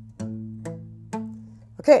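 Steel-string acoustic guitar playing a palm-muted A minor arpeggio: three single picked notes on the fifth, fourth and third strings in a down, up, up stroke, about half a second apart. Each note rings briefly and dies away under the palm mute.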